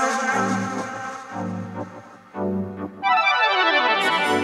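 Chicago house track: organ-like keyboard chords over bass notes repeating about once a second. About three seconds in, a falling pitch sweep glides down under the chords.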